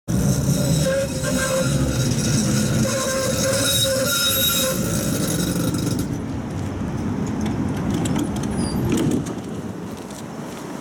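Tatra T3 tram pulling in and slowing to a stop, its wheels rumbling on the rails. A steady high ringing squeal sits over the rumble for the first six seconds or so. The sound then settles to a lower rumble and goes quieter near the end as the car halts.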